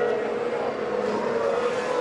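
A 2018 Formula 1 car's 1.6-litre turbocharged V6 engine running at high revs with a steady note.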